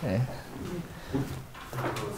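Whiteboard eraser wiping across the board, with a short knock about a second in, likely the eraser or marker against the board or tray, and brief low voice sounds at the start and end.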